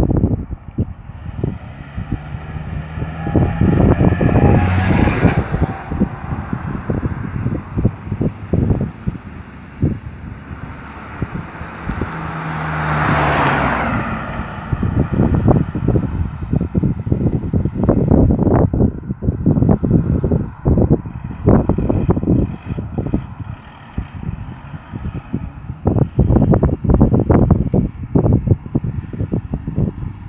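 Two motor vehicles drive past close by on the road, the first about five seconds in and the second, louder, about thirteen seconds in, which is a pickup truck. Gusty wind buffets the microphone throughout.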